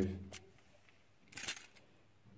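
A short clatter of gaming pieces handled on a tabletop wargame board, about one and a half seconds in, after the end of a spoken phrase.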